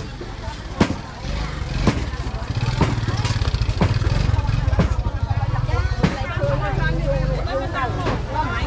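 Busy market ambience: people talking nearby, louder in the second half, over sharp footsteps about once a second and a steady low engine hum that comes in about a second in.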